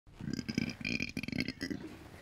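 A woman burping: one long belch of about a second and a half, rumbling in uneven pulses.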